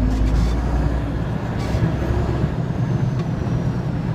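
Straight truck's engine running under way in third gear, heard from inside the cab as a steady deep rumble with road noise, heaviest in the first couple of seconds.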